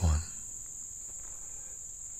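A steady, high-pitched chorus of summer insects, one unbroken shrill tone that holds level throughout.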